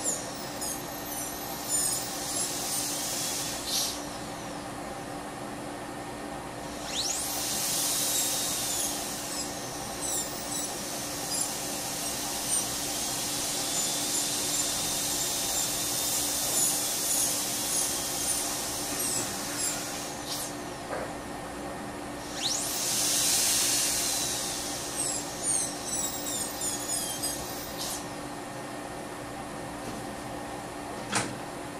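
High-speed air-turbine dental handpiece with a round bur running against a typodont tooth as the access cavity is widened, a high hissing whine whose pitch rises and falls under load. It swells louder twice, about a quarter of the way in and again about three quarters through, over a steady low hum.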